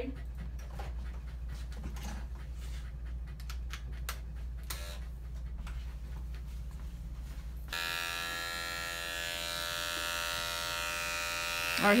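Scattered clicks and small handling knocks, then about two-thirds of the way in an Andis five-speed electric dog clipper fitted with a fresh, cool 40 blade switches on suddenly and runs with a steady buzz.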